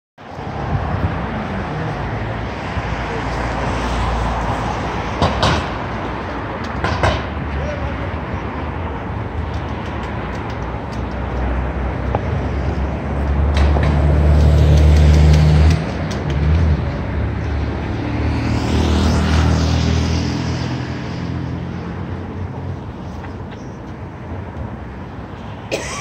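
City street ambience: steady traffic with people's voices. About halfway through, a vehicle's deep engine sound swells for a couple of seconds and then drops away suddenly.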